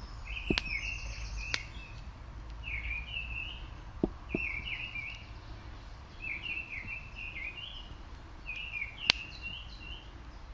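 A songbird sings the same short phrase over and over, about once every second and a half. A wood fire gives a few sharp pops, the loudest near the end.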